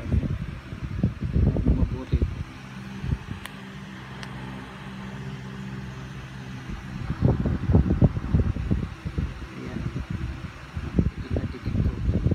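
Low, irregular rubbing and bumping of fingers handling a coin right next to the phone's microphone. A steady low hum stands out for a few seconds in the middle, while the handling pauses.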